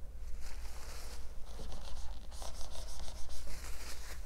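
Marker writing being rubbed off a whiteboard in quick back-and-forth strokes, in two stretches, with the scratch of a dry-erase marker on the board.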